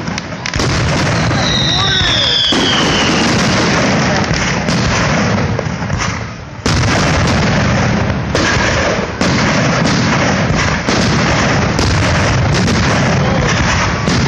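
Aerial firework shells bursting overhead in quick, nearly unbroken succession, close and loud. A falling whistle comes about two seconds in, and there is a brief lull a little after six seconds.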